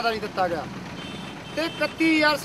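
A man speaking in Punjabi into microphones, with a short pause about a second in.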